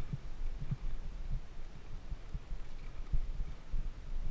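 Wind buffeting the camera's microphone: an uneven low rumble with irregular soft thumps.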